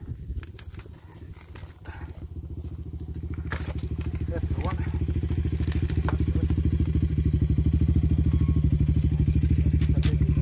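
KTM 990 Adventure's V-twin engine idling with an even, rapid pulse. It grows louder over the first several seconds, then holds steady.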